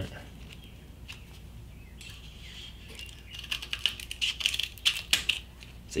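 Scissors cutting through Camco non-slip grip tape, a gritty tape that cuts just like sandpaper: a quick run of short cutting strokes between about three and five seconds in, after a quieter stretch.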